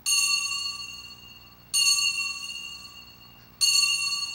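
Altar bell struck three times, a little under two seconds apart, each strike ringing out at the same high pitch and fading. It is rung as the priest receives communion from the chalice.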